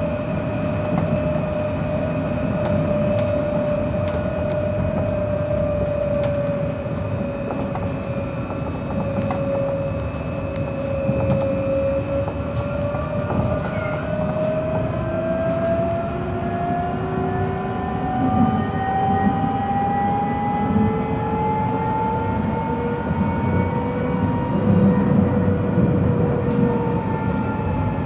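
An Alstom Citadis light-rail tram running, heard from inside the car: a steady rumble of wheels on rail under the electric traction motors' whine. The whine dips a little, then rises in pitch from about halfway as the tram gathers speed, with a second, lower whine rising alongside it.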